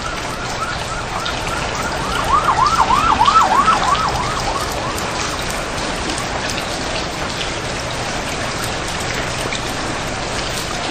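Steady rain hiss, with a siren-like wavering tone that swells about two seconds in, rising and falling about four times a second, and fades out by about five seconds in.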